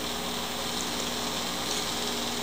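Steady background hiss with a faint low hum and no distinct events: room tone.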